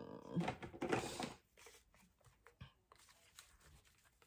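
A throat clearing or a brief vocal sound in the first second or so, then faint rustling and light clicks of paper and craft materials being handled.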